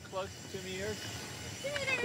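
Faint voices of people talking quietly in the background, a few short scattered words.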